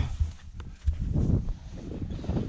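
Wind buffeting the microphone, with scuffs and a couple of short knocks from a climber scrambling over rock.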